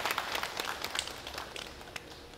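A large audience applauding, the clapping dying away and thinning to a few scattered claps near the end.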